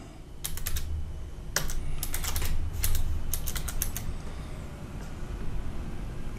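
Typing on a computer keyboard: a run of keystroke clicks in short clusters that stops about four seconds in.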